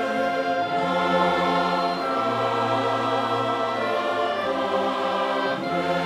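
A choir singing a slow four-part hymn in triple time, held chords changing every second or so.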